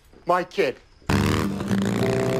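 A woman's short spoken line, then from about a second in a motorcycle engine running steadily.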